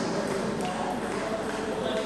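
Table tennis balls clicking on tables and bats, with voices in the background.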